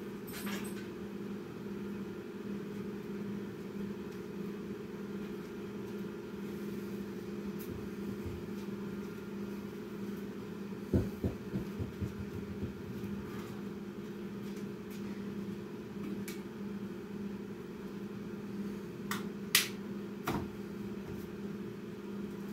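Steady low machine hum. A cluster of knocks comes about eleven seconds in, and two sharp clicks come near the end.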